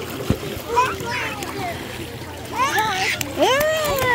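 Water splashing in a swimming pool, with young children's high-pitched voices calling out in rising and falling tones, loudest near the end.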